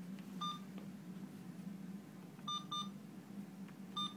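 Alaris PC syringe pump giving short electronic beeps over a steady low hum: one beep, then a quick pair about two seconds later, then one more at the end. The beeping comes as the pump signals that the syringe has not been seated correctly.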